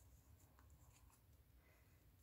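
Near silence, with faint scratching and a few light ticks of a small metal crochet hook working acrylic yarn through stitches.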